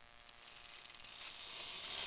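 Trash-found electric scooter's rear wheel spinning up under motor power, a high whirring hiss that builds and grows louder from about half a second in, with the tyre scuffing against a boot. It is the sign that the scooter has power again once a disconnected wire was reconnected.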